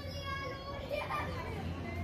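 Children's voices in the background: a short high call near the start and more voices about a second in, over a low steady hum.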